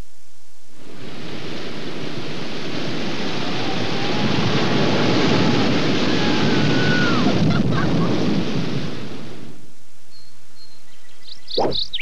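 Rushing whitewater of river rapids, a steady noisy rush that fades in about a second in and fades out near the end.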